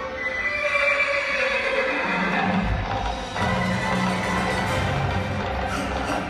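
Ice-show soundtrack played over arena loudspeakers: a horse whinny sound effect falling in pitch in the first couple of seconds, then the music fills out about two seconds in.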